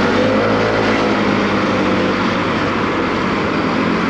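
Small motorcycle engine running under way with steady wind and road noise, its note rising during the first second as it accelerates.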